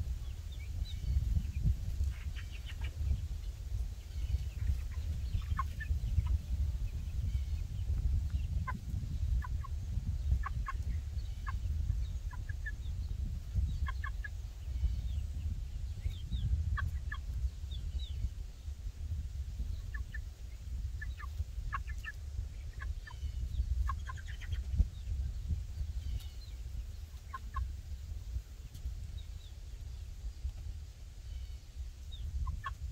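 Young meat chickens peeping and chirping in many short, scattered calls over a low rumble.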